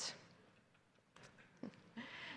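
Near silence: room tone in a pause between a speaker's sentences, with the tail of her last word at the very start and a few faint, short soft sounds in the second half.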